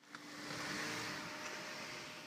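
A vehicle's tyre and engine noise on the highway: a broad rushing sound that swells within half a second and then slowly fades, with a faint steady hum under it.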